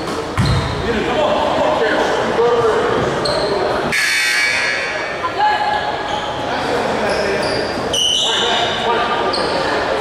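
Basketball bouncing on a hardwood gym floor about half a second in, with short sneaker squeaks and indistinct voices echoing in the gym. A loud burst of noise comes about four seconds in.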